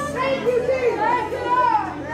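Several voices of a church congregation speaking aloud at once, overlapping, with a low steady hum underneath.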